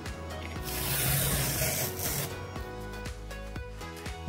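Packing tape being peeled off a cardboard box, a rip lasting about a second and a half, over background music.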